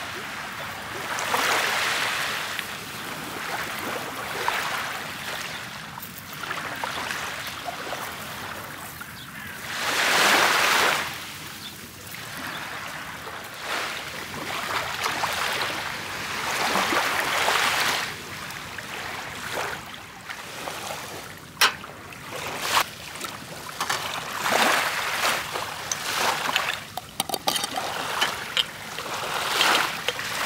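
Small sea waves washing up onto a shell-and-pebble shore, swelling and falling every few seconds, loudest about ten seconds in. Sharp clicks and knocks come in the second half.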